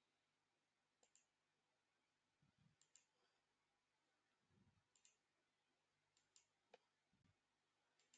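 Near silence, broken by about five very faint computer mouse clicks, most of them a quick press-and-release pair, spread across the few seconds.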